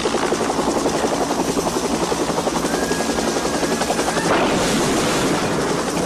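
Helicopter rotor blades chopping in a fast, steady beat close by. A rushing noise swells about four seconds in.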